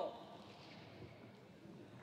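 Quiet, steady hall ambience in a large arena while play is paused before a serve, with the tail of a spoken word at the very start.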